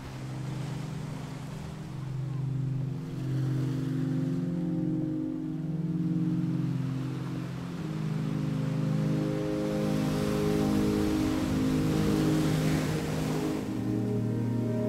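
Slow ambient music of sustained low chords over the rushing wash of ocean surf. The surf grows louder in the second half and stops just before the end.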